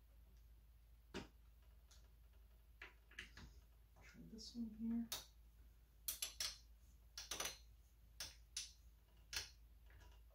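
Hand screwdriver turning the mounting screws of a stock AMD CPU cooler on a motherboard: a scatter of faint metallic clicks and ticks, coming thicker and in quick runs from about six seconds in.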